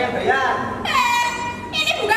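Actors' spoken dialogue on stage, broken in the middle by a shrill, level, horn-like tone that lasts a little under a second before the talking resumes.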